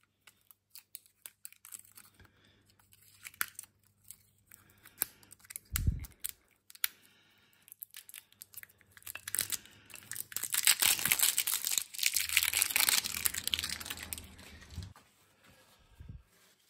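Scattered light clicks and taps of metal parts being handled at a lathe's collet chuck. From about halfway, a paper towel rustles and rubs as it wipes the chuck's threaded nose clean.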